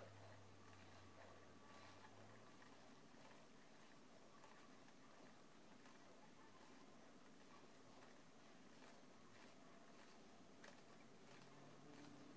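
Near silence with faint, scattered clicks of knitting needles as knit stitches are worked on a circular needle.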